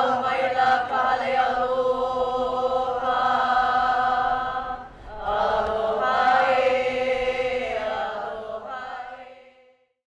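A sung chant in long held tones, in two phrases with a brief break about five seconds in, fading out near the end.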